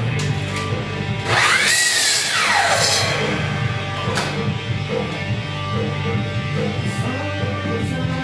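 Live rock music with electric guitar playing steadily; about a second and a half in, a power miter saw's motor whines up to speed, cuts with a loud rasp, then winds down over about a second.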